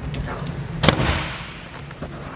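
Fiberglass storage hatch lid on a boat's deck shutting with one sharp bang about a second in, which fades over about half a second, after a few faint clicks. A steady low hum runs underneath.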